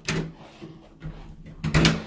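Handling and movement noise from a handheld camera being carried while walking: a sharp rustle or knock right at the start and a louder short burst near the end.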